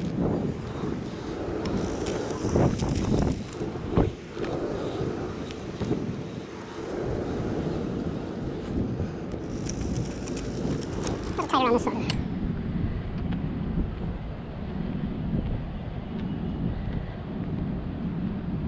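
Steady wind rumble on the microphone outdoors, with brief scraping hiss at times.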